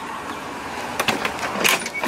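Motorhome entry door being unlatched and opened while the electric power step's motor runs with a steady whir, with sharp clicks about a second in and again near the end.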